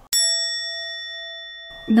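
A single bell-like ding sound effect, struck once and ringing with a fading tone for about a second and a half before it cuts off. It works as a comic letdown cue for a failed result.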